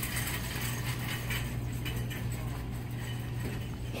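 Steady low hum with faint background noise: the room tone of a store.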